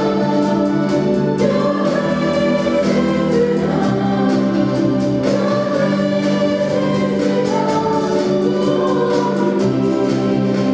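Church choir and a lead singer singing a gospel worship song together, accompanied by keyboard, acoustic guitar and drums with a steady beat.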